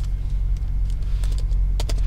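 Computer keyboard typing: a few soft, scattered keystrokes over a steady low electrical hum.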